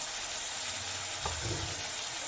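Chopped onion and tomato frying in mustard oil in a stainless steel kadhai, a steady sizzle, with a small knock of the spoon about a second and a half in.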